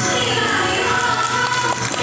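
Women singing a Thiruvathirakali song together, the melody held and gliding, with a few sharp hand claps near the end.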